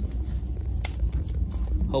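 Wood fire burning in a homemade steel barrel stove, with one sharp crackle a little under a second in and a few fainter ticks over a low rumble.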